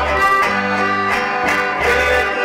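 Live band music: an accordion plays over acoustic guitar and electric bass, with deep bass notes keeping a steady beat.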